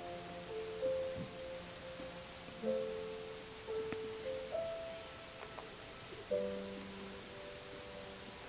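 Soft, slow piano-style keyboard music: sustained chords, each struck and left to fade, with a new chord every second or two.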